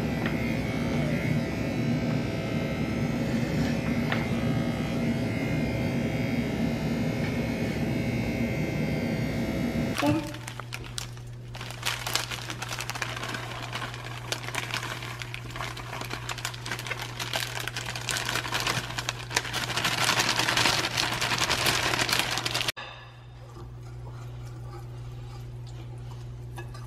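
Corded electric hair clippers buzzing steadily through a haircut, stopping abruptly about ten seconds in. Then scratchy rustling and scraping from a child stirring in a glass mixing bowl, louder toward the end before it cuts to a faint low hum.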